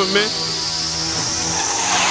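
A mixtape transition sound effect: a noisy sweep rising slowly and steadily in pitch between a DJ drop and the next track. The tail of a man's spoken drop is heard at the very start.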